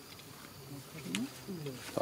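A man's low voice, indistinct and without clear words, starting about a second in and getting louder. A short, sharp high squeak or click comes just after one second.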